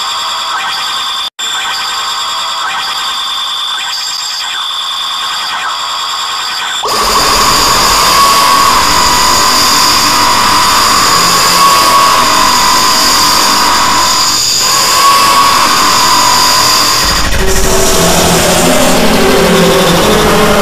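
Heavily distorted, edited remix audio. For about seven seconds there is a thin, high-pitched pattern of steady tones. Then a much louder, noisy sound with a wavering high tone sets in, and a few low stepping notes come in near the end.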